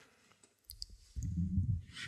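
Near silence, with a few faint mouth clicks, then a short, low closed-mouth "hmm" and an in-breath from a man at a close microphone as he gathers himself to speak.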